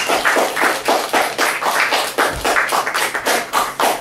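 A small audience clapping, the separate hand claps plainly distinct, several a second.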